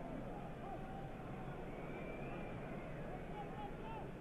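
Steady stadium crowd noise from the spectators at a football match: a continuous hum of many voices with faint calls rising out of it, dull and muffled as on an old television recording.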